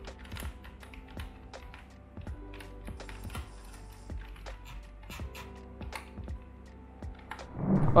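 Typing on an HP K500Y membrane keyboard with round, typewriter-style keycaps: irregular key clicks over background music.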